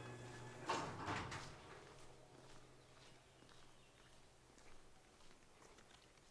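A door being opened, with a short clatter about a second in, then faint background.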